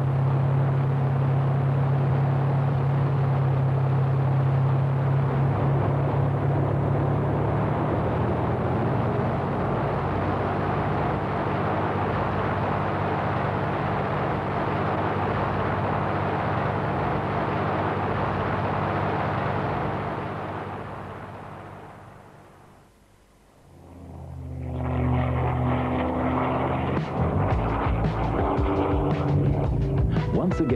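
A P-51 Mustang's V-12 piston engine at full power on its take-off run, a loud steady drone that fades out about twenty seconds in as the aircraft climbs away. Music starts a few seconds later.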